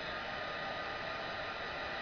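Craft heat tool blowing steadily, an even airy hiss with a faint whine in it, heating acetate until it turns soft enough to fold.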